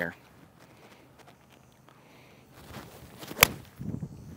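Seven iron striking a golf ball from fairway turf: a short swish of the swing, then one sharp, clean crack of contact about three and a half seconds in. The shot is struck well.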